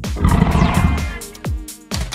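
A monster-style dinosaur roar sound effect during about the first second, over electronic background music with a steady kick-drum beat.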